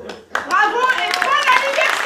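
An audience breaking into applause about a third of a second in, with laughter and many voices over the clapping.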